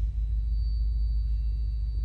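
Deep, steady low rumble, with a faint thin high tone held above it.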